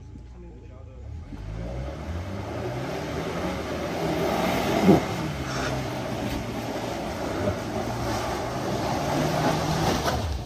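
Tank 300 SUV engine revving hard under load, rising in pitch about a second in and then held high, with a rough haze of tyres churning in mud. A single sharp knock sounds about halfway through.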